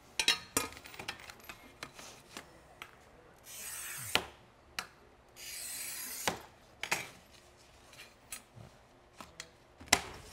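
A rolling cutter wheel scores a glazed ceramic tile twice, each pass a scrape under a second long ending in a click. Near the end comes a sharp crack as the tile snaps along the score line.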